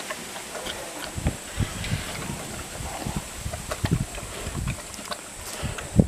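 A bear chewing and gnawing a watermelon, with irregular crunches and smacks, and a louder knock near the end.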